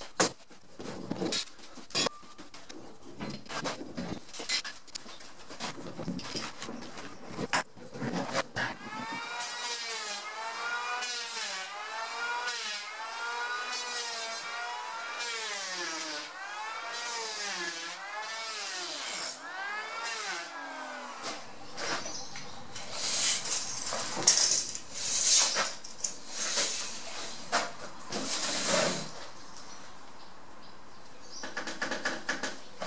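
Electric hand planer shaving a wooden mast, its motor pitch dipping and recovering again and again as it bites into the wood on each push, with louder bursts of cutting near the end. Before the planer starts there are several seconds of scattered knocks and clatter.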